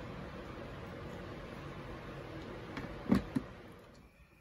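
Steady background hiss while a plastic ATV airbox lid is handled, then two sharp clicks about three seconds in, a quarter second apart, as the lid is pressed into place on its tight clips.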